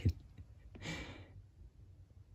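A person's short breathy exhale, like a sigh, about a second in, lasting about half a second.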